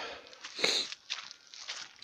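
Footsteps crunching on gravelly dirt, with one louder crunch or scuff a little over half a second in.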